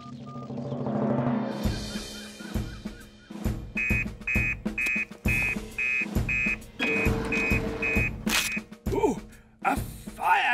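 Cartoon background music with a drum beat, opening with a rising swoosh. Over it, a fire-station teleprinter sounds about a dozen short high electronic beeps, a little over two a second, as it prints out an emergency call.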